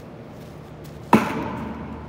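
A single sharp smack about a second in, typical of a baseball popping into a leather fielder's glove, followed by the echo of a large indoor hall.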